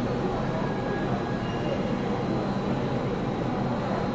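Shanghai Metro Line 4 subway train pulling into an underground station behind platform screen doors: a steady rumble of the moving cars.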